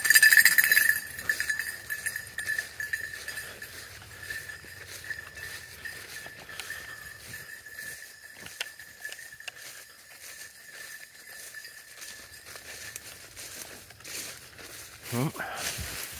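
A bird dog's collar bell jingling steadily as the dog runs off through tall grass, loud at first and fading away over about twelve seconds.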